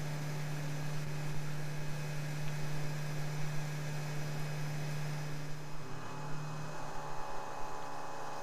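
CNC milling machine taking a roughing cut in the upper receiver with an end mill under coolant spray, heard as a steady low hum. About six seconds in the hum weakens and changes.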